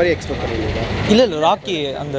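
A man's voice speaking a short phrase about a second in, over a steady low rumble of street traffic.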